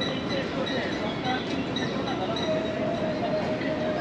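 Urban park ambience: a steady wash of distant voices and city noise, with scattered short high chirps and a held tone in the second half.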